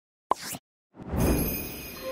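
Animated logo-intro sound effects: a short pop about a third of a second in, then a rushing swell of noise from about a second in that leads into music.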